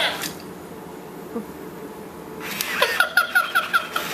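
Elmo Live animatronic toy's high, squeaky recorded voice from its small built-in speaker: the tail of a spoken line right at the start, then, after a pause, a quick run of about six giggles near the end.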